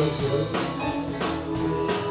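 Live band playing an instrumental passage: electric guitar notes over a drum kit and percussion, with a steady beat.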